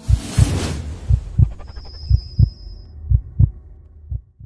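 Heartbeat sound effect: pairs of low thumps about once a second, opening with a loud whoosh, and a thin high tone held for about a second midway.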